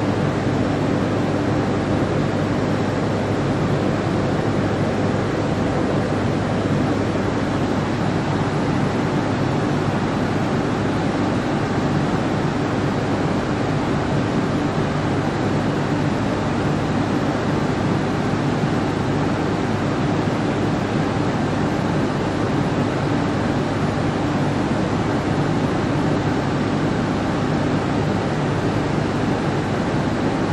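Steady hum and rushing noise of an AM class electric multiple unit standing in the platform as it powers up, its auxiliary fans and equipment running with a faint low drone underneath.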